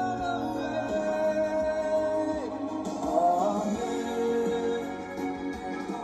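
A song with singing over instruments playing from an FM radio broadcast received on a car stereo head unit.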